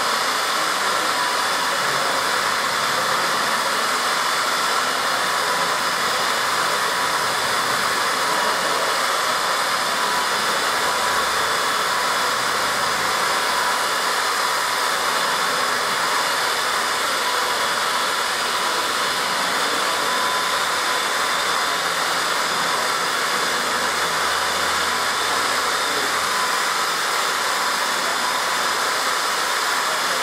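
Two electric twin-head car polishers running, their foam pads working the paint of a car's hood: a steady, unbroken whir with faint steady tones in it.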